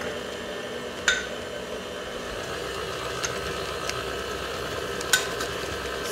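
KitchenAid tilt-head stand mixer running at slow speed, its beater turning a thick mix of butter, condensed milk and powdered sugar in a stainless steel bowl: a steady motor hum with a few light clicks.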